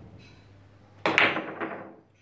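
Carom billiards shot: a sharp crack of the cue tip on the cue ball about a second in, followed by quick ball-on-ball clicks and knocks off the cushions that fade over the next second.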